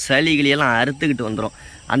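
A man talking close to the microphone, with a short pause about three-quarters of the way through.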